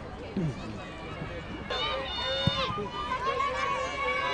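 Voices of nearby spectators talking, getting busier about halfway through, with one sharp knock of a football being kicked about two and a half seconds in.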